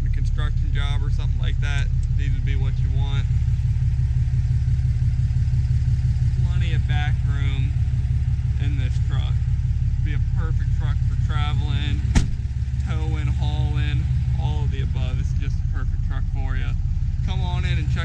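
Ram 2500's 6.7-litre Cummins turbo-diesel inline-six idling with a steady low hum, and a single sharp thump about twelve seconds in.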